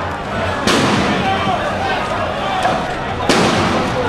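Protesting crowd shouting, with two sudden loud bangs about two and a half seconds apart.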